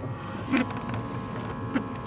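Car cabin noise while driving: a steady low hum of the engine and tyres on the road. Two brief faint sounds come about half a second in and near the end.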